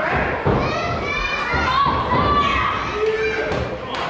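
Heavy thuds of wrestlers' bodies hitting the wrestling ring mat, a couple of them in the first second, amid shouting from the crowd with high-pitched voices among them.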